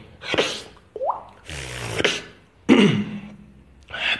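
Beatboxer opening his solo with a few separate vocal sound effects: a breathy burst, a quick rising drip-like pop about a second in, a longer hiss, and a sharp hit near the end.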